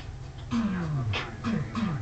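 A woman's wordless voice: one long falling sound about half a second in, then two short falling ones close together near the end.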